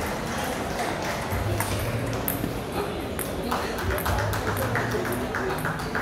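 Table tennis rally: the ball clicking off the paddles and bouncing on the table in a quick run of sharp knocks, over the steady chatter of a busy hall with other tables in play.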